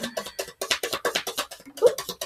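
A deck of tarot cards being shuffled by hand: a quick, even run of soft card clicks and slaps, about ten a second, over background music.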